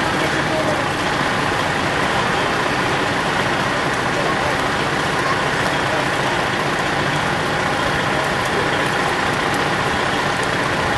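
Fire trucks' engines running steadily, a dense, even noise with no let-up.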